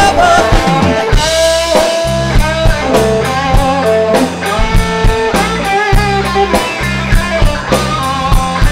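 Live rock band playing an instrumental passage: an electric guitar's lead line with bending notes over bass guitar and a steady drum kit beat.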